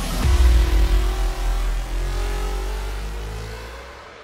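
Cinematic logo sting: a whoosh leads into a deep bass boom about a quarter-second in, followed by a low rumble and a slowly rising tone that fade away near the end.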